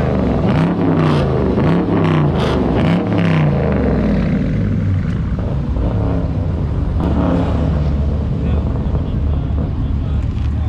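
Car engine revved in quick repeated blips, a little over one a second, for the first three and a half seconds, then settling to a steady low idle rumble.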